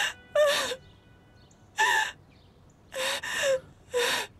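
A woman sobbing in grief: four short, gasping sobs, each with a wavering cry in the voice, separated by brief quiet breaths.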